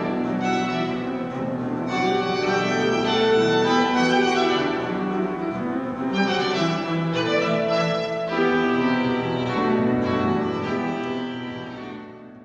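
Chamber music from a small string ensemble with piano: violin and other bowed strings holding sustained chords over a double bass. The music fades out near the end.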